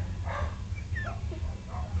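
Shetland sheepdogs giving a few faint short barks and a brief falling whine, over a steady low hum.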